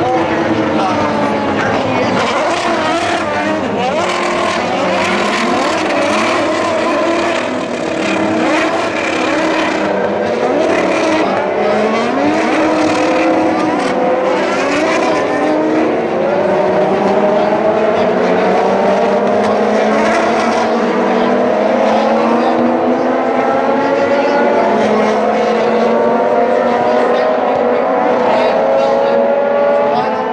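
A pack of IndyCar open-wheel race cars running on an oval, many engines heard at once, their pitches rising and falling as cars go by. The overall pitch climbs gradually through the second half.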